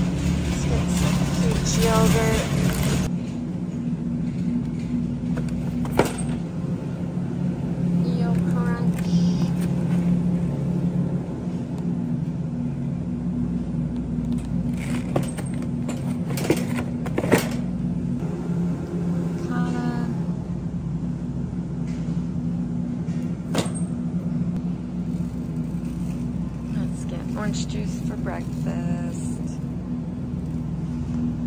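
Supermarket aisle ambience: a steady low hum and the rumble of a shopping cart being pushed, with a few sharp knocks as packs of yogurt go into the cart and faint voices in the background.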